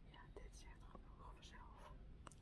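Very quiet whispered speech over a steady low room hum.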